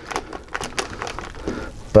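Window-tint film and its plastic liner crinkling and crackling as the film is rolled forward into a tight roll on wet glass: a scatter of small, sharp clicks.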